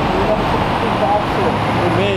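Steady traffic noise from cars and a bus passing on a busy road, under low voices.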